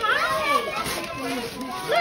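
Several voices, children's and adults', talking and calling over one another, with no clear words.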